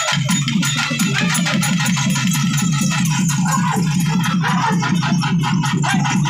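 Fast, steady drumming with many strokes a second, played for dancing.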